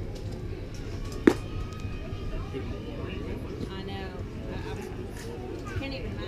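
A baseball smacking into the catcher's mitt once, a sharp pop about a second in, over spectators' chatter.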